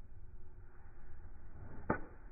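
Golf club swishing down through the swing and striking the ball, with one sharp crack near the end.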